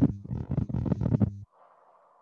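A man's voice speaking briefly and stopping about a second and a half in, followed by faint steady hiss.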